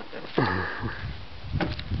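A man laughing softly: a louder burst of laughter about half a second in, then short breathy laughs near the end.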